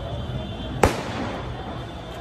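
A single sharp explosive bang a little under a second in, with a short echo off the street, over crowd and street noise.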